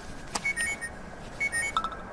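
Smartphone alarm going off: a short group of high electronic beeps repeating about once a second, with a click about a third of a second in. The beeping stops near the end, followed by a brief lower blip as the alarm is switched off.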